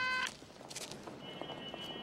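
Apartment intercom buzzer pressed at the street door: a steady electric buzz that cuts off suddenly about a quarter second in, leaving quiet background.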